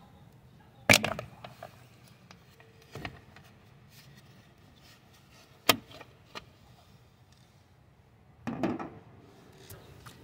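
Plastic side mirror cover being pried off its clips with a flathead screwdriver: a sharp snap about a second in, a small click near three seconds and another sharp snap near six seconds as the clips let go. A short scuffling noise follows near the end.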